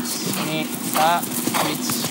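A horse cantering on grass, its hoofbeats heard as faint knocks, with a short high-pitched voice call about a second in.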